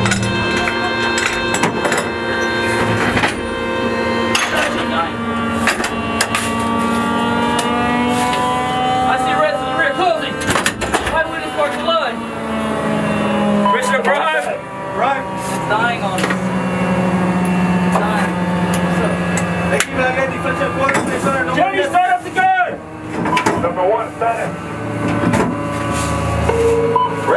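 Crew compartment of an M109A6 Paladin self-propelled howitzer: a steady mechanical hum from the running vehicle, with scattered metal clanks and knocks, and voices over it.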